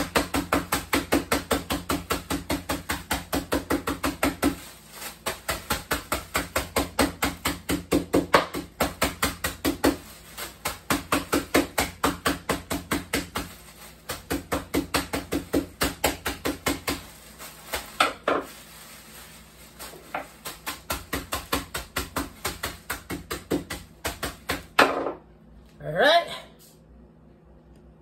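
Kitchen knife chopping toasted bread slices inside a plastic bag on a wooden cutting board to make breadcrumbs. Rapid strikes come about four or five a second, in runs broken by short pauses.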